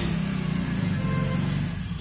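A low, steady motor drone that eases off near the end.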